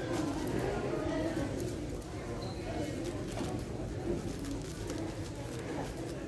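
Rapid plastic clicking of a 7x7 speed cube's layers being turned during a solve, over background voices.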